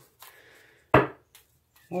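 A tarot card deck knocked once, sharply, on a table about a second in, after a faint rustle of cards.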